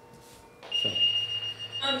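A steady, high electronic alert tone, typical of a fire-department pager going off, starts about two-thirds of a second in and holds without a break over a low hum.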